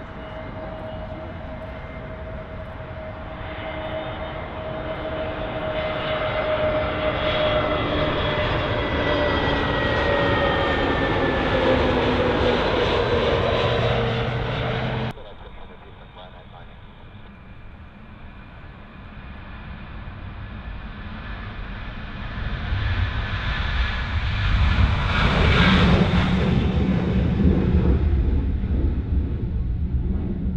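Airbus A320neo jet engines on final approach, a whining tone that grows louder and slowly falls in pitch as the airliner passes, cut off suddenly about halfway through. Then a Boeing 737-800's CFM56 jet engines at takeoff thrust, rising to a loud roar that peaks during the takeoff roll and climb-out.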